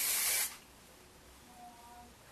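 A short burst of hair spray from a spray can: one hiss lasting about half a second at the start.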